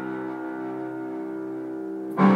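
A sustained piano chord ringing and slowly fading, with no new notes struck.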